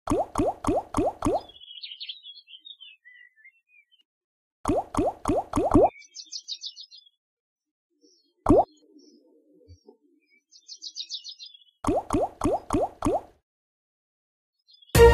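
Online slot game sound effects: three spins, each ending in a run of five quick rising bloops as the five reels stop one after another. A single bloop lands in between, and faint chirpy effects play in the gaps.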